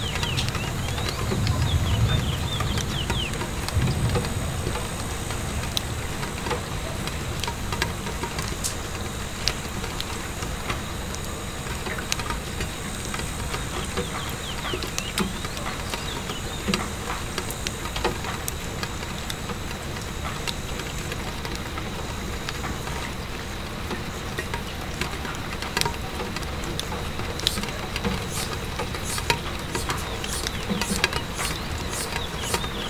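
Steady rain pattering on a window pane, mixed with the scattered sharp pops and snaps of a crackling wood fire, which come more often near the end. A low rumble swells twice in the first few seconds.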